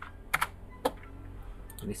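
Three separate computer keyboard key clicks, spaced about half a second to a second apart, as a new dimension value is typed in and entered.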